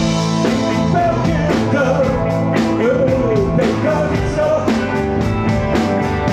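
Live rock band playing: electric guitars, bass guitar and drum kit, with a steady beat and a melodic line that bends in pitch.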